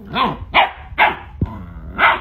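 Rottweiler puppy barking, about four short barks in quick succession.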